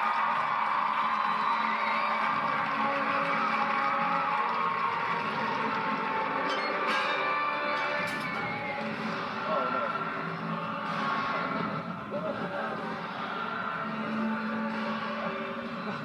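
Television audio of a sitcom: a sustained music cue with crowd noise and occasional voices, heard through a TV speaker.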